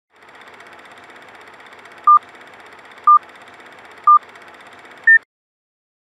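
Countdown beep sound effect: three short beeps one second apart, then a single higher beep, over a steady hiss that cuts off right after the last beep.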